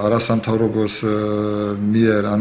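Speech only: a man talking in Georgian, drawing out his vowels in two long held stretches about a second each.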